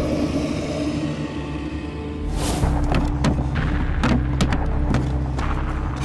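Tense film score built on a low, steady drone, with a rushing swell about two and a half seconds in and several heavy thuds in the second half.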